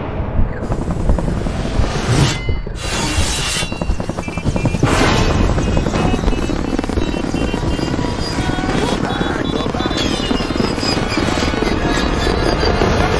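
A helicopter's rotor chopping fast and steadily, mixed under the film's music score.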